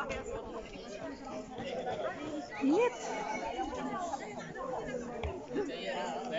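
Background chatter of several people talking at once, with no single voice clear, and one voice briefly louder about halfway through.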